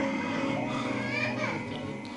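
Low, overlapping voices of several people in the room talking quietly in a pause in the Quran recitation.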